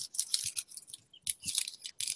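Clear self-sealing cellophane bag crinkling in the hands as a folded paper flyer is slid into it, a run of short irregular crackles.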